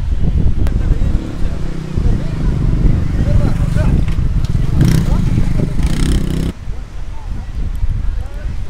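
Beach ambience: indistinct voices of people on the beach over a heavy low rumble of wind on the microphone. The higher sounds drop away abruptly about six and a half seconds in.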